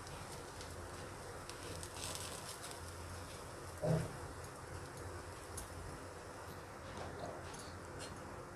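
Faint sizzling and light crackling of buttered pav bread toasting on a hot iron tawa as the pieces are turned over by hand, over a steady low hum. A brief louder sound about four seconds in, as a piece is lifted and flipped.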